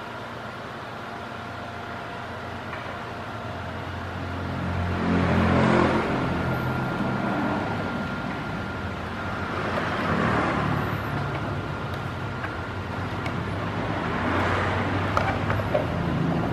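Road vehicles passing by, their rushing noise and low engine sound swelling and fading three times over a steady low hum.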